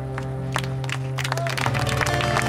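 A live band holds a sustained chord over a steady low drone. Scattered audience clapping starts about halfway through.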